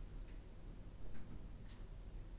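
Three light clicks, spaced irregularly, over a steady low hum in a room.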